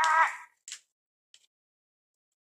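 A child's drawn-out wordless hum, rising slightly in pitch, ends about half a second in. It is followed by a short crinkle and a faint tick of plastic wrap being handled on a boxed iPad.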